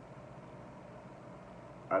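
Steady low mechanical hum of background noise in a pause between words, with a man's voice starting again right at the end.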